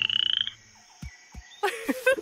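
Cartoon frog croak: a short, slightly rising rattling trill lasting about half a second. Near the end comes a brief burst of squeaky, sliding pitched sounds.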